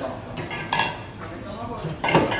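Stainless steel bowl and metal items being handled on a counter: a few sharp metallic clinks and knocks.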